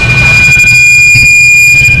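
A loud, steady, high-pitched electronic tone held without change, with a low hum underneath. It cuts off as speech resumes.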